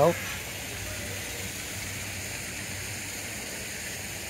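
Steady, even hiss of outdoor background noise with no distinct events.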